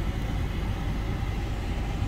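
Steady low road rumble heard from inside a moving car's cabin.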